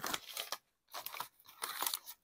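Paper wrapper crinkling in short, irregular bursts as it is unfolded by hand.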